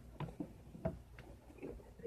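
A few light clicks and knocks, about five spread over two seconds, from objects being handled at close range.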